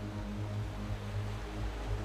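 Soft ambient background music: a sustained low drone of held notes over a faint hiss.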